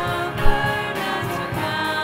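A group of voices singing a hymn together with long held notes. A single short thump stands out above the singing about half a second in.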